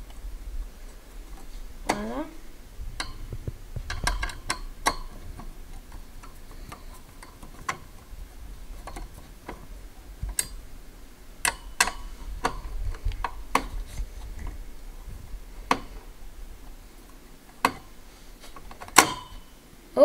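Screwdriver turning out the spring-loaded mounting screws of a stock CPU cooler on a motherboard, the metal tip and screws giving irregular sharp clicks and ticks, about fifteen over the span.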